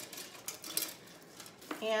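Light rustling and clicking of an artificial pip berry garland being handled and pulled together around a lantern on a tray, mostly in the first half second, then quieter.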